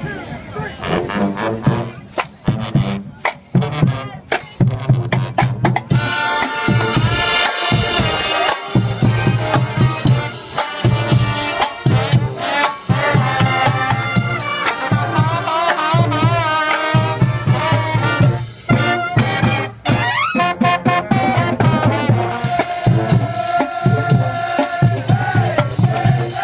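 College marching band playing live: drumline hits first, then the brass comes in with the melody about six seconds in, over a steady drum beat.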